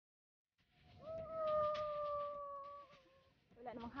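A woman's long, held cry of about two seconds, a single sustained pitch that sags slightly at the end, then laughter starting near the end.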